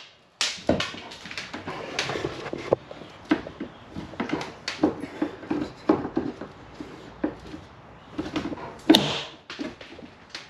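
Hammer blows knocking at glued-on metal bars inside a school bus, an irregular run of sharp knocks about two to three a second, with the loudest strike near the end.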